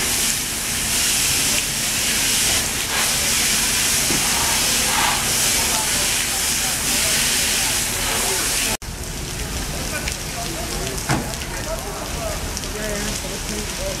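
Steady loud hiss of a fire hose's water jet spraying into burning trees and brush. After a sudden cut about two-thirds of the way through, the hiss is lower and rougher, with faint voices.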